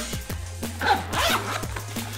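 Zipper on a camera backpack being pulled open, a short zip about a second in, over background music with a steady bass note.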